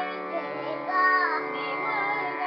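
A small child singing to harmonium accompaniment: the harmonium's reeds hold steady chords while the child's voice slides in pitch above them, strongest about a second in.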